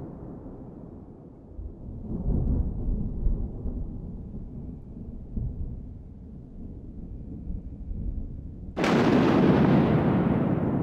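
Deep rumbling booms, with a sudden much louder boom near the end that dies away slowly.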